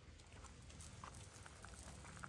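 Near silence: faint outdoor background with a low steady hum and a few soft, scattered clicks.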